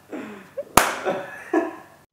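A woman's quiet, breathy laughter trailing off, with one sharp smack a little before the one-second mark.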